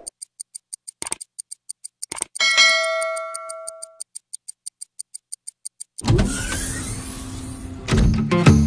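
Clock-like ticking, about five ticks a second, with two mouse clicks and then a notification-bell ding that rings out for over a second. About six seconds in, a loud rushing vehicle sound with a low rumble starts suddenly.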